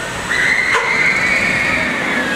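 Roller coaster train running through its layout, track noise under a high, drawn-out tone that starts a moment in and slowly falls, with a sharp click partway through.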